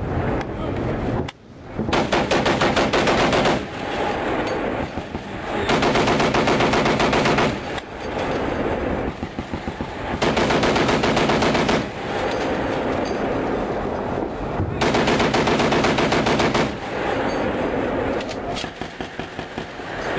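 Humvee turret-mounted machine gun firing in four long bursts of about two seconds each, with lighter gunfire going on between them.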